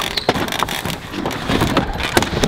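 Hard-shell suitcase being hauled out of a car's cargo area, with a run of quick knocks and rattles as it bumps against the car and comes down.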